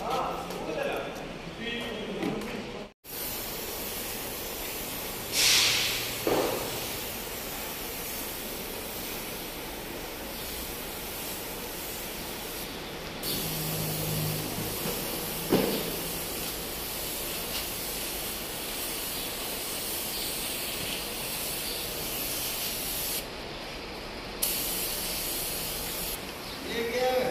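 Gravity-feed compressed-air spray gun spraying plastic primer onto a car bumper: a steady hiss of air and atomised paint. It stops briefly twice where the trigger is let go, with two sharper, louder bursts of air about five and fifteen seconds in.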